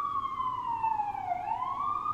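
Emergency vehicle siren wailing outside: one slow falling sweep that bottoms out about one and a half seconds in, then starts rising again.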